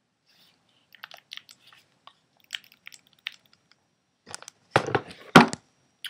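A plastic hard case being handled and shut: scattered light plastic clicks and rattles, then a cluster of loud clacks and knocks near the end as the lid comes down.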